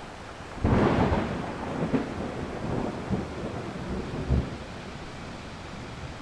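Thunder over steady rain: a sudden loud clap a little over half a second in, then rolling rumbles that slowly fade.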